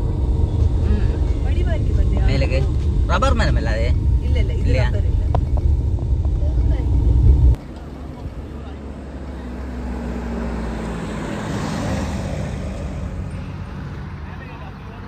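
Steady low rumble of road and engine noise inside a moving Suzuki car, with voices around two to five seconds in. The rumble cuts off suddenly about seven and a half seconds in, giving way to quieter roadside street noise that swells and fades around twelve seconds in.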